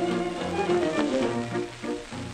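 An instrumental band break in a 1930 comic song, played back from a Victor 33 rpm demonstration record on a turntable, with a faint click about a second in.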